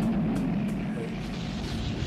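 Film sound effect of the Batwing's jet engines as it flies past, a rushing noise that swells toward the end and cuts off suddenly.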